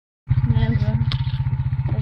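Golf cart's small petrol engine running as it drives, a rapid, even low putter, with a single click about a second in.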